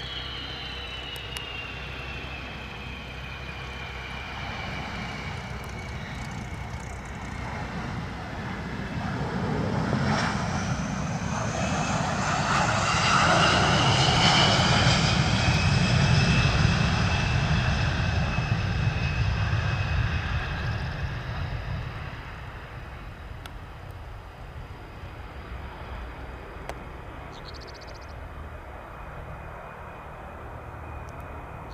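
Boeing KC-135R Stratotanker's four CFM56 (F108) turbofan jet engines during a touch-and-go. The engines' high whine falls in pitch as the jet comes in. The engine noise then swells to its loudest about halfway through as it passes on the runway under takeoff power, and fades as it climbs away.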